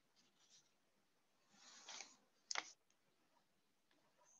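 Near silence, broken by a faint rustle of a loose sheet of paper being laid down about two seconds in and a single short click just after.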